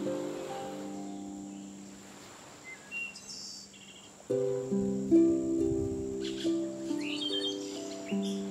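Soft harp music with birds chirping over it. The plucked notes fade into a lull with a few short chirps about three seconds in, then a new phrase of notes starts a little past halfway, with more chirping near the end.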